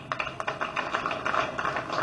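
Audience applauding: many quick hand claps running together.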